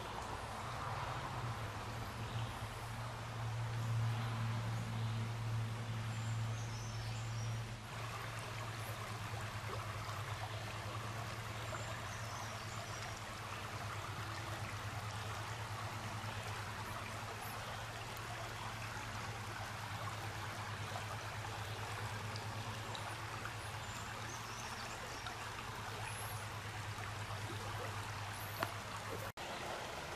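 Shallow stream flowing over riffles, a steady rushing of water, with a steady low hum under it and a few faint high chirps.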